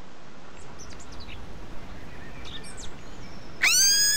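Outdoor background hiss with a few brief bird chirps. Near the end comes a louder short tone that rises in pitch and then holds.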